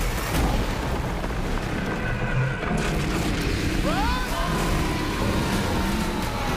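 Film trailer sound mix: heavy booms and impacts over music, with a cry that rises in pitch about four seconds in.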